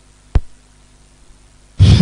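A single short click about a third of a second in, then near the end a sudden loud breathy whoosh with a falling tone.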